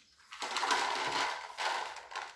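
A Russian blue cat crunching dry kibble from its bowl: a fast run of crisp crunches starting about half a second in and lasting over a second.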